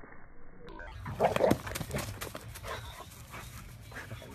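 Pit bull playing roughly with a fluffy toy on grass: a short, loud sound from the dog about a second in, followed by a run of quick clicks and rustles as it shakes and tugs at the toy. The first moment sounds muffled before the sound turns clear.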